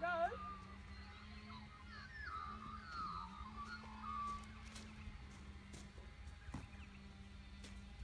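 Birds calling in warbling phrases for the first few seconds, over a steady low hum and a low rumble of wind on the microphone.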